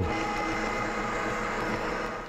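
Electric meat grinder running steadily, its motor humming as it grinds elk meat and back fat.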